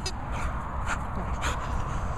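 A black cocker spaniel makes a few short whimpering and breathing sounds close by, about one every half second, over a steady low rumble.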